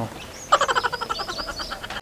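A fast, rattling run of croaks, like a frog's call, starting about half a second in, with faint high chirps above it.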